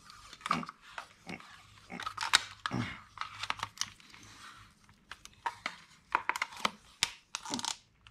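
Scattered plastic clicks, knocks and rattles of a pistol-grip RC transmitter being handled and turned over in the hands, with a few short low vocal grunts between them.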